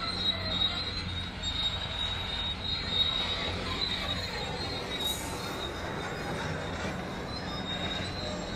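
A steady high-pitched squeal over a low, rumbling drone.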